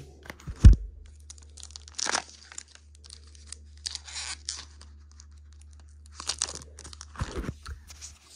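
Clear plastic wrapping being torn and crinkled off a MiniDV cleaning cassette by hand, in several short bursts a second or two apart, with a low thump just over half a second in.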